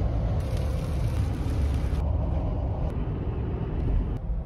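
Steady road and engine rumble inside a car cruising at highway speed, with a hiss of tyre and wind noise that drops away about halfway.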